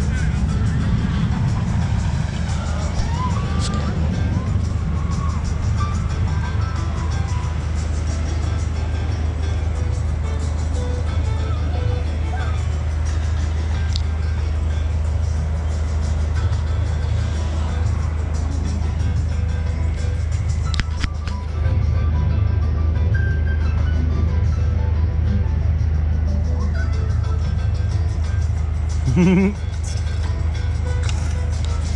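Background music with faint voices, over a steady low hum, and a brief louder sound just before the end.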